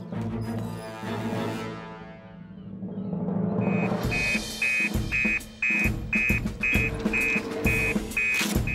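Dramatic cartoon score with timpani-like drum hits. About halfway through, an emergency alert joins it: a fire station alarm beeping in short high pulses, about two a second, signalling a call-out.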